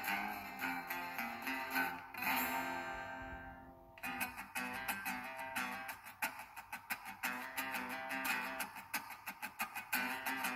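Acoustic guitars playing without vocals: strummed chords, then a chord left ringing that fades out, and about four seconds in a quick, even picked rhythm starts and runs on.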